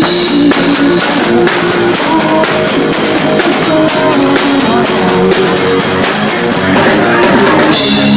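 Live band playing loud, steady rock music, with a drum kit and electric guitar.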